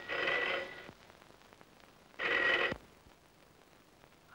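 Black rotary-dial desk telephone's bell ringing: one ring ends about a second in, and a second, shorter ring follows about two seconds in.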